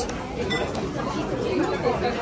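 Background chatter of many overlapping diners' voices in a busy restaurant. A faint rustle and click of a ring-bound menu page being turned comes about half a second in.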